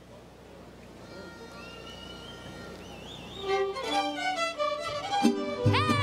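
Mariachi band with violins starting a song live: soft held notes, then a wavering violin melody, with the full ensemble and bass coming in near the end and the music growing louder.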